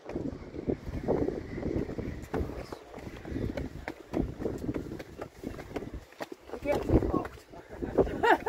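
Footsteps on stone steps and the hard breathing of someone climbing them, with indistinct voices.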